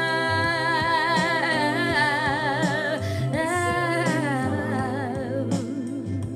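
A woman's solo singing voice holding long notes with vibrato on open vowels, sliding down and then climbing through a run, over a quiet instrumental backing. The voice tapers off near the end.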